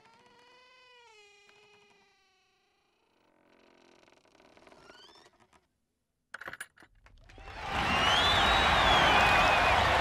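A long hush with only faint sounds, broken by a short sharp sound about six and a half seconds in; then a large crowd bursts into loud cheering and clapping about seven seconds in and keeps it up.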